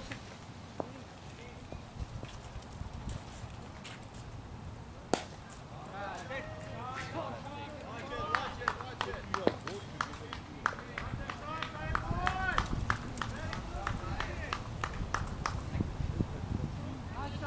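A single sharp knock about five seconds in, typical of a cricket bat striking the ball, followed by players' voices calling out across the ground with scattered sharp clicks among them.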